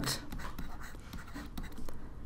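Stylus scratching and ticking against a pen tablet as a word is handwritten, a quick run of short strokes.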